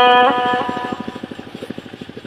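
A long held sung note of Red Dao hát lượn folk singing ends about a third of a second in, leaving a fast, even low pulsing much quieter than the voice.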